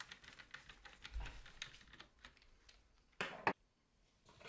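Faint small clicks and scrapes of a screwdriver turning a screw down into a multimeter's metal shield, then a brief louder noise about three seconds in.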